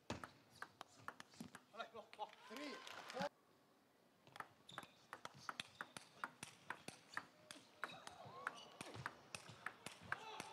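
Table tennis rally: the celluloid ball clicking sharply and quickly back and forth off the players' rubber bats and the table. The clicks break off for about a second a little after three seconds in, then resume.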